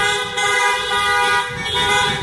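Several car horns honking at once, held in long, overlapping blasts at different pitches.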